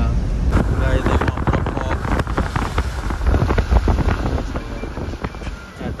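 Wind buffeting the microphone in a moving car, with crackling gusts over a low, steady road rumble; it eases briefly just before the end.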